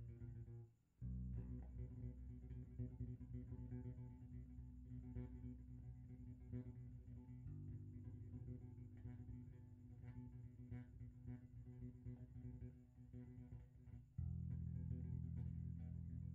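Four-string electric bass guitar played with the fingers: a bass line of sustained low notes that breaks off briefly about a second in, moves to another note about halfway through, and comes in louder on a new note near the end.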